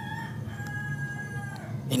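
A faint, steady pitched call with overtones, held for about a second in the middle, in the background of a pen writing on paper.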